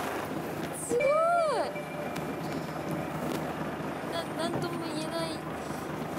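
Steady background noise of a fishing boat at sea in wind. About a second in, a short vocal exclamation rises and then falls in pitch.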